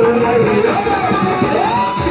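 Live bhajan music from a band led by an electronic keyboard, loud and slightly distorted, with a sliding lead melody that rises and holds a higher note near the end.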